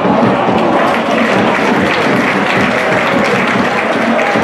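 Football stadium crowd noise: many fans clapping and chanting at once, loud and steady.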